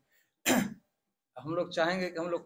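A man clears his throat once, a short cough about half a second in, at the same loudness as his speech.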